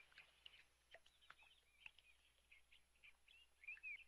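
Faint birdsong: scattered short, high chirps and little falling whistles, a few a little louder near the end.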